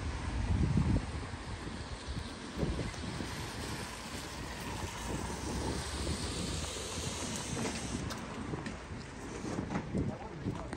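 Wind buffeting the microphone in gusts, strongest about a second in, over a steady hiss of outdoor street noise.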